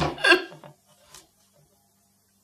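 A man sobbing: one loud, wailing cry about half a second long, then a brief fainter catch just after a second in.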